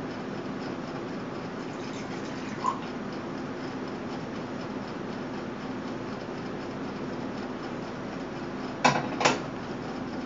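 A small amount of water poured from a stainless steel Kuhn Rikon Duromatic braiser pot into a glass measuring cup, faint over a steady background hiss. Near the end come two sharp knocks about half a second apart as the steel pot is set down on the stove grate.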